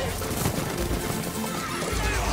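Horses galloping with pounding hooves, and a horse whinnying near the end, over film score music, as heard in a movie trailer's sound mix.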